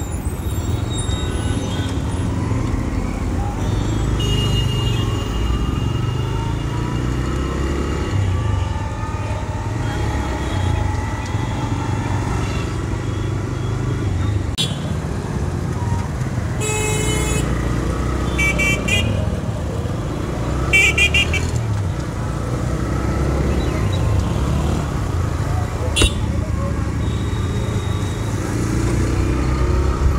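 A TVS Raider 125's single-cylinder engine runs as the motorcycle rides through city traffic. Vehicle horns toot several times in short blasts from about the middle of the clip.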